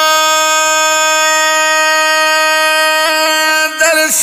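A singer holding one long, steady note in a Pashto naat (devotional poem). The note breaks off a little before the end, as the next sung line begins.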